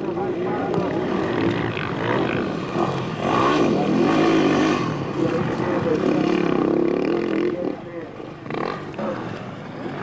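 Enduro motorcycle engine revving on a dirt track, its pitch rising and falling again and again, quieter near the end.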